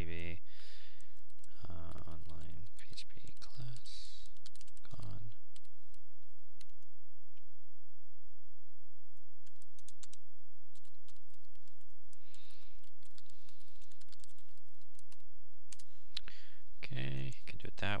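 Computer keyboard typing: irregular keystroke clicks throughout as a line of code is entered, with some low, indistinct muttering in the first few seconds.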